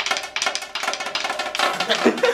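Marching snare drum fitted with an Evans mesh practice head, struck with sticks in a fast run of crisp, clicky strokes.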